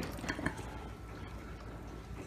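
Quiet room tone with a few faint clicks and rustles in the first half second.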